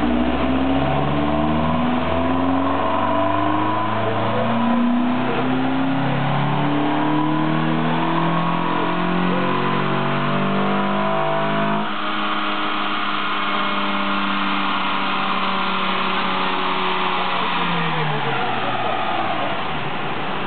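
Renault Mégane II's non-turbo four-cylinder petrol engine, breathing through an open cone air filter, pulling hard on a chassis dynamometer: the revs climb steadily for about twelve seconds in a power run. It then lets off, and the engine and rollers wind down, the pitch falling slowly and then dropping quickly near the end.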